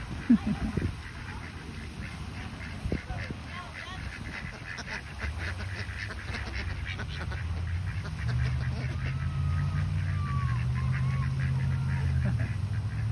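Domestic ducks quacking, loudest in a few calls just after the start, then a quick run of shorter calls and a few softer gliding notes near the end. A low steady hum comes in about halfway and grows louder.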